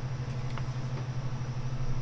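A steady low electrical hum with a slight pulse in it, and a couple of faint clicks.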